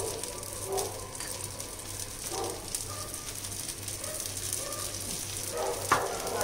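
Paniyaram batter frying in hot oil in the wells of a kuzhi paniyaram pan: steady sizzling with fine crackling.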